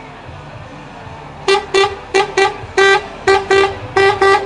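Truck horn sounding a rhythmic run of about eight short toots on one pitch, one held a little longer in the middle, starting about a second and a half in, over the low running of the lorry's diesel engine.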